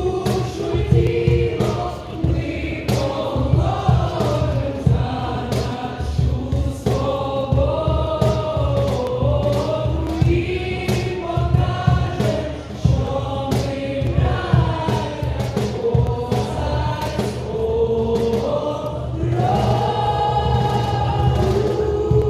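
A group of voices singing together in chorus over a regular beat.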